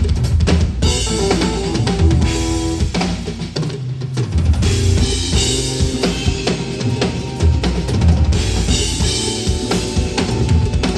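A Ludwig drum kit played in a busy groove: bass drum, snare and cymbals, with sustained pitched instruments sounding under the drums. The kick briefly drops out about four seconds in, then comes back.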